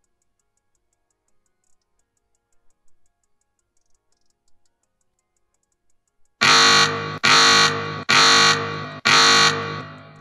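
The alarm1.mp3 alarm sound played by a Python playsound script when the set alarm time arrives. It is four loud, repeated tones, each about three-quarters of a second long and fading, coming just under a second apart and starting about six and a half seconds in. Before it there are only a few faint clicks.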